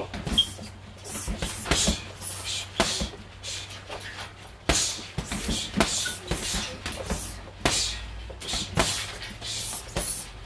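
Gloved hooks and elbow strikes landing on a teardrop-shaped heavy bag: repeated sharp thuds in quick, irregular groups.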